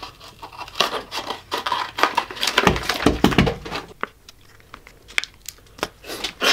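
Plastic fruit cups and their packaging being handled and pulled apart: crinkling, crackling and tearing, with a few dull bumps near the middle.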